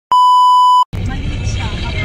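A steady, high test-tone beep lasting under a second, the TV colour-bar sound used as a video transition. It cuts off abruptly and is followed by the steady low rumble of a moving car heard from inside the cabin.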